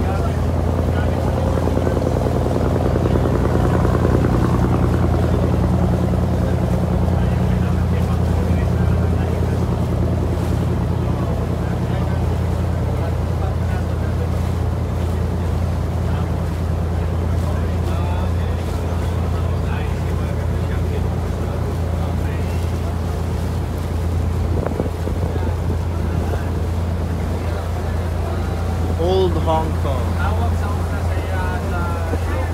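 Small wooden harbour boat's engine running steadily under way, a low even drone heard from on board, with water splashing and wind on the microphone.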